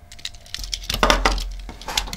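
Die-cast metal toy cars handled and set down on a wooden tabletop: a few sharp clicks and clinks about a second in and again near the end, over a low rumble from the table.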